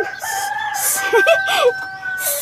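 Rooster crowing: one long, drawn-out crow held on a steady pitch for about two seconds.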